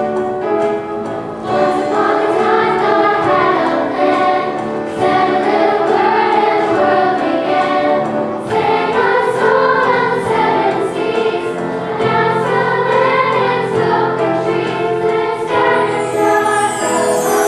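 A choir singing; the sound grows fuller and louder about a second and a half in.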